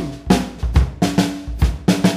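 Drum kit playing a short break on its own: about half a dozen bass drum and snare strokes.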